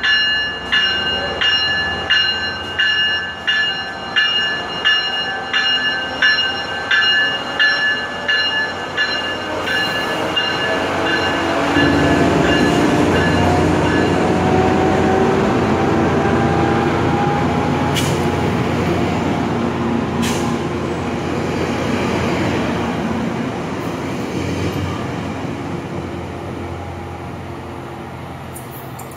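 Tri-Rail diesel commuter train departing. The locomotive's bell rings in regular strokes, about three every two seconds, for the first ten seconds. Then the engine note rises and the coaches' wheels roll loudly past, fading as the train draws away near the end.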